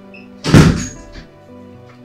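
A door shut with a single loud thud about half a second in, the sound dying away quickly, over background music holding steady notes.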